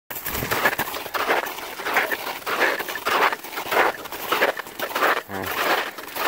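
A hiker's heavy, rhythmic breathing, out of breath from exertion, about one and a half breaths a second.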